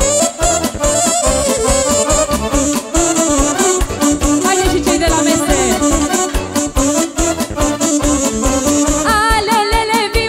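Live Romanian wedding band playing a hora dance tune, with a running melody over keyboard and a steady beat. About nine seconds in, a woman's singing voice joins.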